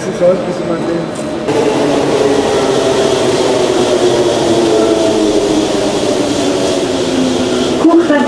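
Paris Métro train running, heard from inside the carriage: a steady rumble carrying a motor whine that slowly falls in pitch, starting about a second and a half in.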